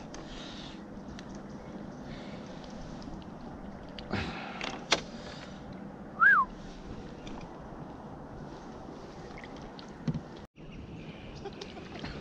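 Faint steady outdoor background on the water with a few light knocks and clicks. One short whistled note that rises and falls comes about six seconds in.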